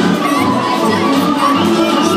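A group of young voices shouting together over Bulgarian folk dance music, which keeps playing.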